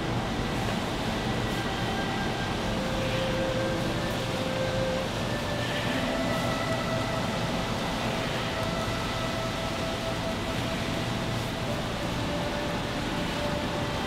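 Soft, slow background music of faint held notes under a steady rushing noise.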